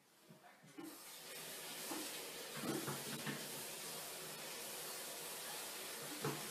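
A steady rushing hiss comes in about a second in and holds, with a few faint, short low sounds around the middle.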